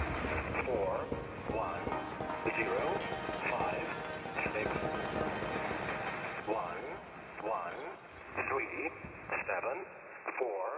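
Live electronic music from synthesizers, with a muffled, radio-like voice sound running through it over a low drone; it thins out over the last two seconds.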